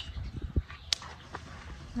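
Light handling noises at a wooden work table: a few soft knocks and one sharp click about a second in.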